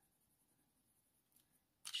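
Near silence, with no audible sound until a voice starts right at the end.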